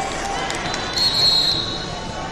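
Busy wrestling-tournament hall: background voices and a few sharp knocks, then a short shrill high-pitched sound lasting about half a second, starting about a second in, which is the loudest thing heard.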